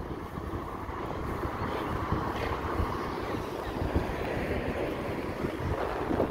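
Street traffic, with a car passing that swells and fades through the middle, over wind rumbling on the phone's microphone.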